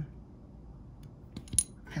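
One sharp, bright metallic clink about one and a half seconds in, with a fainter click just before it. It comes from a small hobby screwdriver's metal shaft being set down against the hard parts on the work mat.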